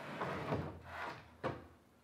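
Router sled carriage sliding along its metal rails, then a single knock about one and a half seconds in.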